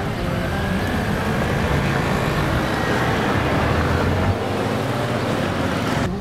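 Steady outdoor city noise like passing road traffic, with a low rumble that drops away about four seconds in.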